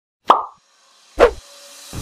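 Two short sound-effect hits: a plop with a falling tail at about a third of a second, then a heavier, deeper hit just over a second in. Music starts near the end.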